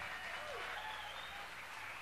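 Faint audience applause with a few scattered calls, just after a song's last chord has died away.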